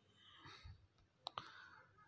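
Near silence with a faint breath-like hiss, then two small sharp clicks close together just past the middle.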